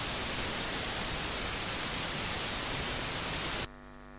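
Steady hiss like static, cutting off suddenly near the end and leaving only a faint hum.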